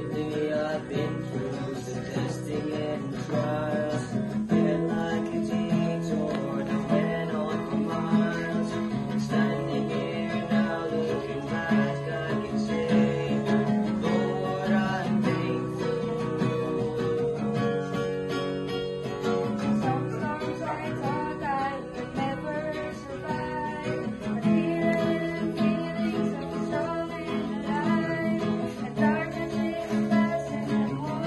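Acoustic guitar strummed, playing a steady run of chords.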